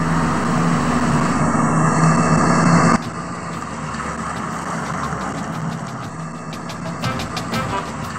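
A Mercedes-Benz sedan's engine running as the car drives off, with a steady low hum that grows louder over about three seconds and then cuts off suddenly. Background music follows, with a regular beat coming in over the last few seconds.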